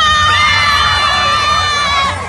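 Crowd of children shouting and cheering, led by one long high-pitched scream held for about two seconds; it is the excited reaction to the hanging clay pot being broken in a quebra-pote game.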